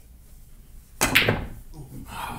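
Pool cue striking the cue ball about a second in, with billiard balls clacking together, a sharp loud crack that dies away within half a second.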